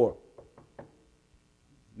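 A few quick, light knocks on a wooden lectern, close together, acting out a knock on a door.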